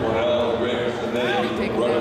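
Several people's voices talking and calling out at once, overlapping so that no single voice stands out.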